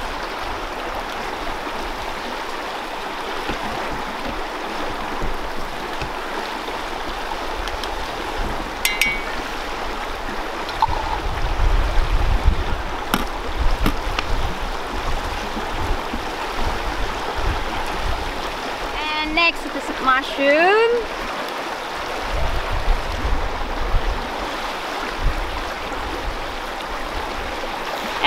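Steady rush of a shallow river running over rocky rapids, with low rumbles of wind on the microphone now and then.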